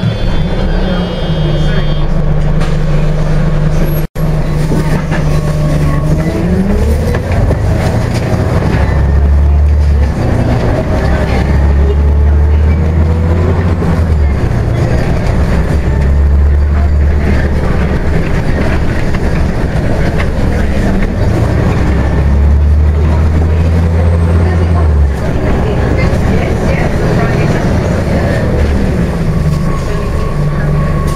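Scania OmniCity single-deck bus heard from inside the saloon: the engine runs at a steady low note, then rises in pitch as the bus pulls away about six seconds in, and runs on with a deep drone under load as it drives. The sound cuts out for an instant about four seconds in.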